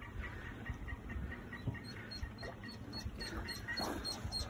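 Ducklings peeping faintly in a quick string of small high peeps, about four a second.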